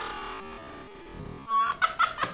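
A person's laughter breaking out loudly near the end, after a quieter stretch.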